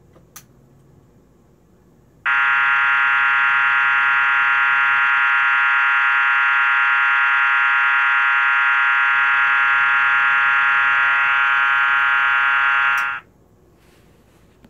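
System Sensor MAEH24MC fire-alarm horn/strobe sounding its electromechanical tone on 24 V DC: a steady, buzzy horn that comes on about two seconds in, holds at an even level for about eleven seconds, then cuts off quickly.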